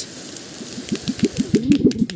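Sausages sizzling on a barbecue grill. About a second in, a quick uneven run of short rising pitched sounds and a few sharp clicks comes in over the sizzle.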